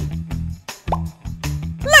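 Upbeat background music with a pulsing bass line, with a cartoon splash transition sound effect: a sudden splash at the start and a short rising plop about a second in.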